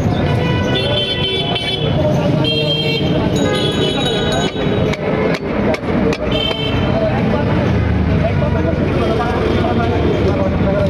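Busy street-market din: voices, passing vehicles and short horn toots now and then, with a few sharp knocks around the middle.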